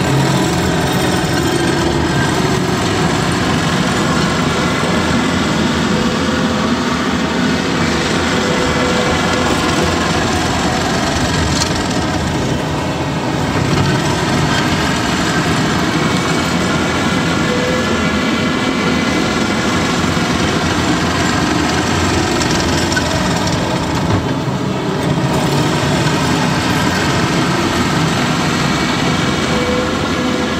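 Takeuchi TL12V2 compact track loader's diesel engine running steadily as the machine travels across the dirt pad on its rubber tracks.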